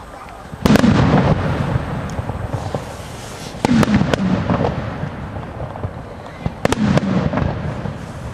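Aerial fireworks display: three clusters of sharp bangs about three seconds apart, each followed by a rolling echo.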